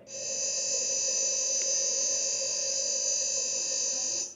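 A steady, high-pitched electronic tone from a cartoon soundtrack played on a computer, holding level for about four seconds and then cutting off suddenly.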